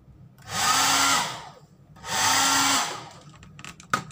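Hand-held hair dryer switched on briefly twice, each blast lasting about a second, its fan rising in pitch as it spins up and dropping as it cuts off. A few clicks of handling follow near the end.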